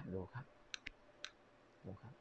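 A few faint, light clicks of small hard objects touching, as a clay amulet is handled against a magnet, after a word or two of a man's voice at the start.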